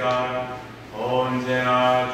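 A man's voice chanting liturgical chant on a nearly level pitch, breaking off briefly for a breath about half a second in and resuming about a second in.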